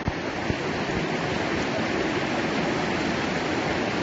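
Fast-flowing river water rushing over a shallow, rippled stretch: a steady, even rush.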